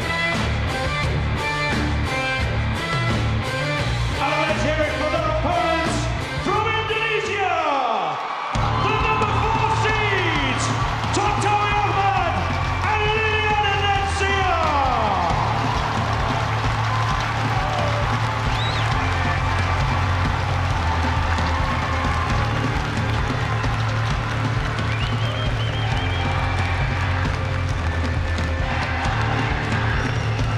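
Loud arena walk-out music with a steady driving beat. About seven seconds in, the bass cuts out under a long falling swoop, then the beat returns with several more falling swoops over it.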